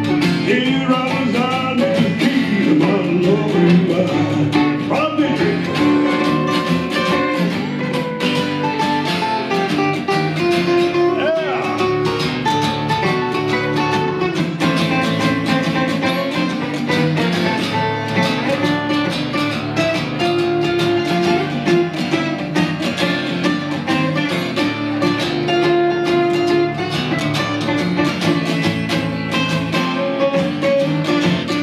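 Two acoustic guitars strumming together while a harmonica plays held notes with a few pitch bends over them, an instrumental break with no singing.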